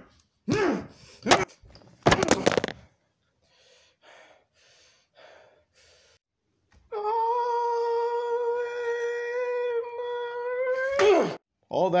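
A man's voice grunting in short bursts with a few sharp thuds, then a long held wail of about four seconds on one steady pitch that drops away at the end.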